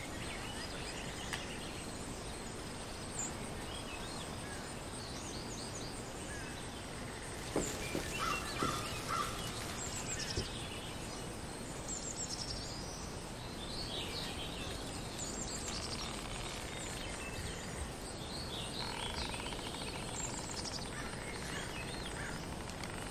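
Forest ambience: many small birds chirping and calling over a steady background hiss, with a short flurry of louder chirps about eight seconds in.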